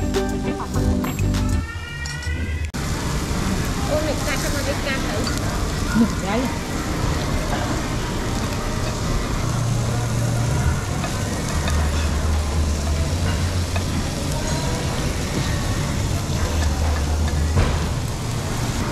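Background music for the first couple of seconds, then meat sizzling steadily on a tabletop Korean barbecue grill plate, with faint voices behind it.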